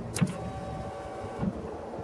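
Ignition key turned on a BMW K1200LT: a sharp click, then a steady electric whine for about a second as the bike's electrics come on before starting, ending with a soft thump.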